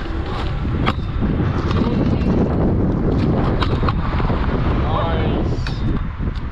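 Stunt scooter wheels rolling on tarmac under a heavy rumble of wind on the action camera's microphone, with a few sharp clacks from the deck and wheels.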